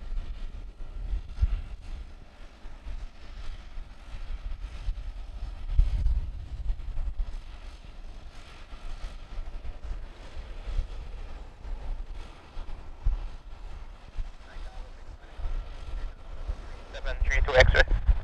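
Wind buffeting the microphone in gusts, with a faint steady whine from a DHC-6 Twin Otter's turboprops idling before takeoff. A voice on the airband radio breaks in near the end.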